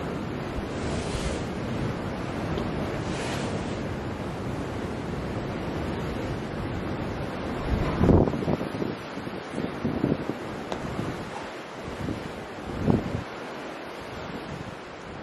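Sea surf washing and wind on the microphone, a steady rushing with two brief hissing swells early on. In the second half, short low gusts buffet the microphone, the strongest about eight seconds in.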